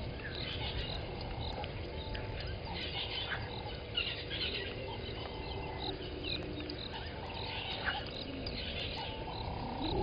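Daytime bushveld ambience: several birds chirping and calling throughout, with short held calls repeating every second or two, over a steady low rumble.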